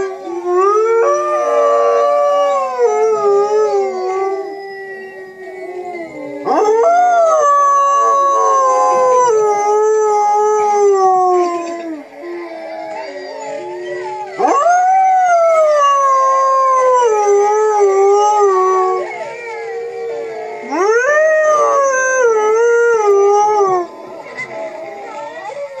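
A pack of wolves howling in chorus from a recording, several overlapping howls at different pitches. They come in four long bouts, each voice rising steeply at the start and then sliding slowly down.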